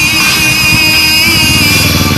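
A Yamaha sport motorcycle's engine running as the bike rides off, over loud music.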